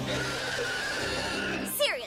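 Cartoon soundtrack: background music under a steady airy hiss, with a short, steeply falling cry near the end.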